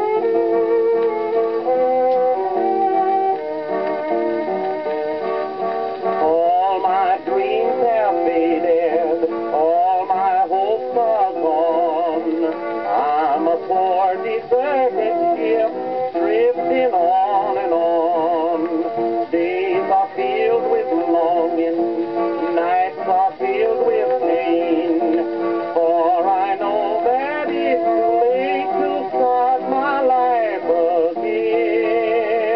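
EMG horn gramophone playing a Depression-era 78 rpm country song record, its sound cut off above the middle treble. An instrumental passage of steady notes comes first, then a man sings with a wavering vibrato from about six seconds in.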